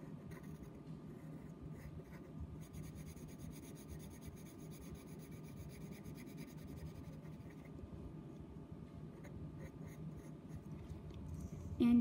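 Graphite pencil scratching on paper as a leg and shoe are drawn and shaded in, with a busier run of quick shading strokes in the middle, over a faint low steady hum.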